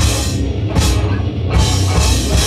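Live rock band playing an instrumental passage on electric guitars and a drum kit, with a heavy low end. The cymbals drop out and come back in twice.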